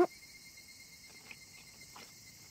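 Faint, steady chirring of insects in the background, with a small soft tick about a second in.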